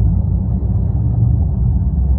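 Outboard engines of an Axopar 900 boat running at slow manoeuvring speed under joystick control: a steady low rumble.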